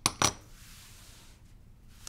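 Two light clicks about a quarter second apart as a small seam roller with a wooden wheel and plastic handle is set down on a cutting mat, followed by a soft, faint rubbing.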